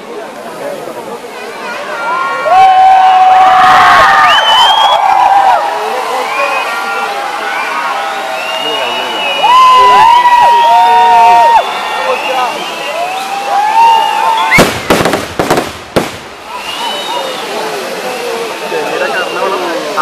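Festival fireworks structure burning with a continuous fizzing crackle of sparks, under loud crowd shouting and cheering. A quick run of sharp bangs comes about three-quarters of the way through.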